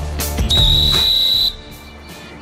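A single whistle blast: one steady, shrill high tone lasting about a second, over background music that stops together with it.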